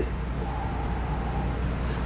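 A person blowing one long, steady breath across a bowl of hot water to push more steam up toward the face during a facial steam.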